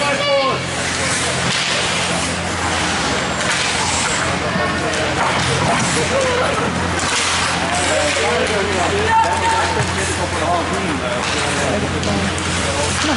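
Ice hockey game in an indoor rink, heard from the stands: spectators' voices chattering over a steady low hum, with a few sharp clacks from sticks and puck on the ice.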